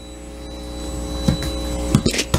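A steady hum with several even tones layered in, growing slightly louder, with two soft knocks about a second and a half in and near the end.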